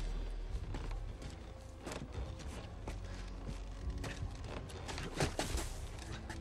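Hurried footsteps in snow, a quick irregular run of steps, with a couple of heavier impacts a little past five seconds in, over a low steady music drone.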